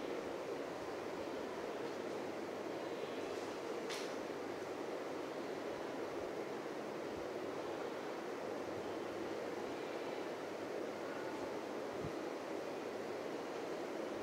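Steady background hiss, with one brief faint click about four seconds in.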